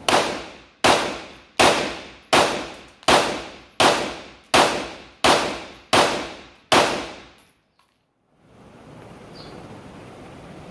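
Canik TP9SF Mete 9mm pistol fired ten times in steady rapid fire, about one shot every three-quarters of a second, each shot ringing out briefly. The even spacing runs unbroken through all ten rounds of mixed ammunition: the slide cycles every round without a stoppage.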